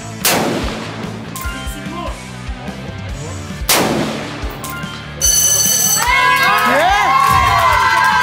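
Two rifle shots from an AR-15-style rifle, about three and a half seconds apart, over background music. Near the end a brief high electronic tone sounds, and then onlookers start shouting and cheering.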